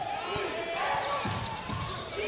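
Basketball dribbled on a hardwood court: a run of short, repeated bounces, with voices murmuring underneath.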